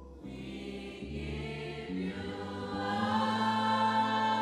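A congregation singing a slow worship song together, holding long notes, growing louder near the end.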